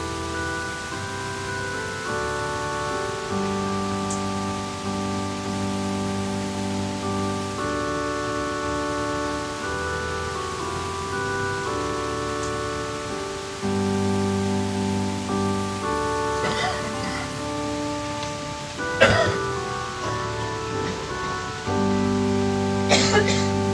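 Keyboard playing slow, held chords that change every few seconds. A sharp knock sounds about nineteen seconds in.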